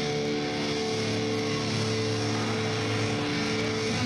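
Electric guitar in a live rock concert solo, holding a long sustained chord that rings steadily, with a note sliding down in pitch at the very end.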